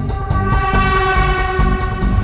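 Film background music with a steady, driving drum beat, over which a long horn-like tone is held without changing pitch from just after the start.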